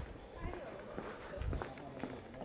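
Footsteps of a person walking on a paved path, about two steps a second, with faint voices in the background.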